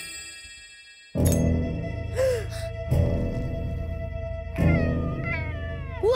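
A struck bell rings out and fades, then background music starts suddenly about a second in, with a few sliding, cat-like pitch glides over a steady low bed.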